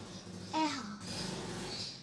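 A child's voice saying a single short "eh", sounding out a vowel letter, followed by low room noise.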